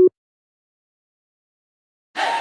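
Silence: the electronic background music cuts off abruptly right at the start and nothing is heard after that.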